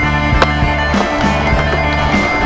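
Music with a steady beat over skateboard sounds: a board sliding along a metal rail and wheels rolling on concrete, with a sharp knock about half a second in.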